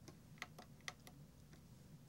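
Near silence with a handful of faint, irregular button clicks as the controls are pressed.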